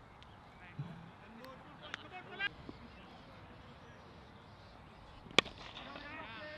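A single sharp crack of a cricket bat striking the ball, about five seconds in, over faint open-air background with distant voices.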